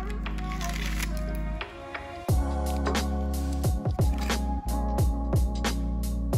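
Background electronic music: sustained low bass at first, then from about two seconds in a steady beat with deep bass notes that slide downward.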